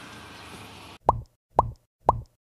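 Two identical cartoon 'pop' sound effects about half a second apart, each a short pop that drops quickly in pitch, marking text labels popping onto the screen. They follow a steady background hiss that cuts off abruptly about a second in.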